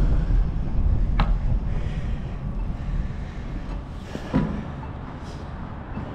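Low wind and road rumble from a bicycle ride through city streets, dying away steadily as the bike slows to a stop. Two short sharp clicks cut through it, about a second in and again after about four seconds.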